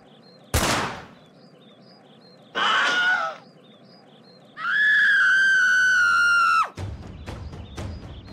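Synthetic animation sound effects: a sharp whoosh and thud about half a second in, then a short noisy cry a couple of seconds later. After that comes a long, high-pitched held scream of about two seconds that cuts off suddenly, over faint chirping birds. Drum-led music begins near the end.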